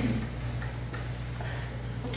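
A pause in the room: a steady low electrical hum, with a couple of faint clicks.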